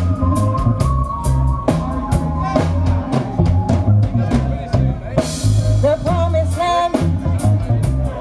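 Live reggae band playing: a heavy, repeating bass line under regular drum-kit hits, with held notes above and a cymbal swell about five seconds in.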